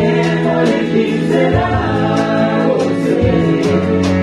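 Gospel choir singing over a band, with a sustained bass line under the voices and a steady beat of sharp percussion hits.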